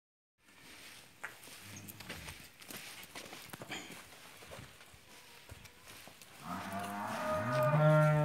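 A cow gives one long, loud moo starting about six and a half seconds in, rising in pitch and then holding. Before it, only faint scattered knocks and shuffles.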